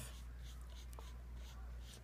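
Black marker drawing short strokes on paper: faint, scratchy swishes of the felt tip, over a steady low hum.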